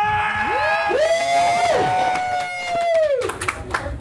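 Several people whooping together in long, high, held "woo" calls that overlap, each sliding up at the start and falling away at the end.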